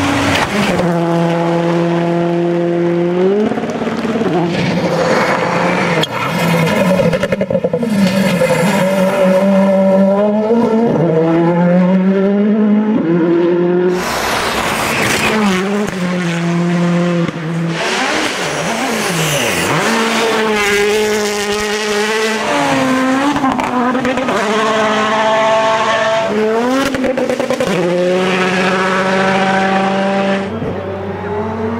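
Rally cars at full speed on gravel stages, engines revving high and dropping sharply with each gear change, over and over. Several passes are cut together one after another.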